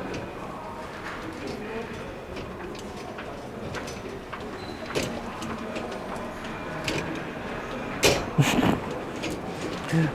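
Wire rack of a built-in dishwasher being handled and adjusted: scattered light clicks and rattles of metal and plastic, with a louder clatter of several knocks about eight seconds in, over a low murmur of background voices.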